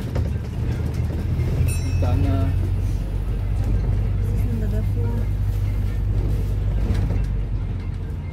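London double-decker bus in motion, its engine and drivetrain giving a steady low drone heard from inside the cabin, with faint voices of passengers.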